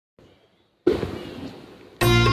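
A sudden loud noisy crash or burst a little under a second in, fading away steadily over the next second.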